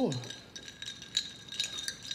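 Ice cubes clinking and rattling against a glass as a straw stirs the drink: a string of small, irregular clicks.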